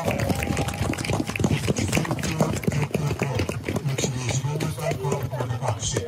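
Scattered clapping from a small outdoor crowd during a podium prize presentation, with a voice talking over it.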